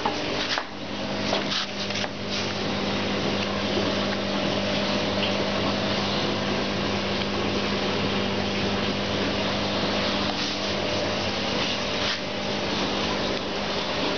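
A steady machine hum with several fixed tones, with a few short knocks in the first two seconds and another about twelve seconds in.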